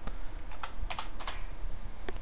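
Computer keyboard keys being typed: several separate, unevenly spaced keystrokes.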